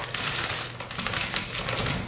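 Metal shower-curtain hooks clicking and scraping on the rod, in quick irregular clicks, as a plastic curtain is hooked up and rustles against them.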